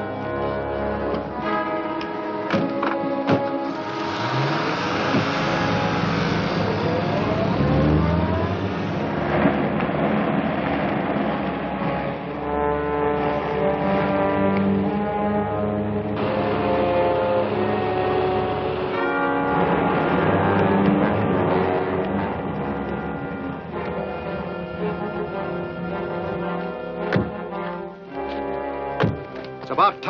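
Orchestral action score with brass playing throughout. About four seconds in, a car engine rises in pitch as it speeds up under the music. A few thuds come near the end.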